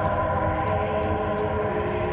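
A sustained synthesizer chord of several steady tones held through, with no percussion, in a Goa trance track.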